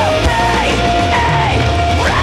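Live rock band playing: electric guitars and a singer on microphone, with held notes that bend in pitch over a steady bass line.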